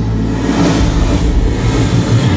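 Live rock band playing loud in an arena: a dense, noisy wall of band sound over a steady low bass line.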